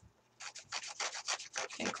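Paper edge being scraped with a handheld paper distressing tool, a run of quick rasping strokes, several a second, starting about half a second in.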